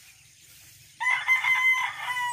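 A rooster crowing: one long crow that starts suddenly about a second in.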